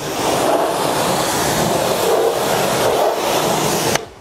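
Pressure washer lance spraying a steady jet of water onto a car's bodywork, a loud, even hiss, rinsing the panel.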